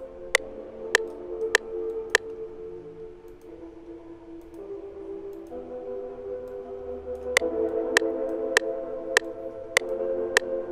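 Sustained Omnisphere synth pad chords playing a simple A minor progression, the chord changing every second or two. A metronome clicks steadily about every 0.6 seconds over them, dropping away for a few seconds in the middle.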